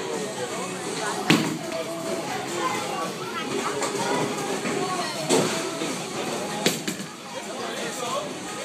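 Bowling alley ambience: a steady hum of voices with several sharp knocks and clatters of bowling balls and pins, the loudest about a second in and others around five and seven seconds in.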